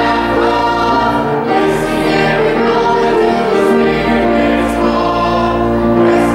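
Congregation singing a hymn with organ accompaniment, many voices holding sustained notes; the deep organ bass drops out for about two seconds in the middle.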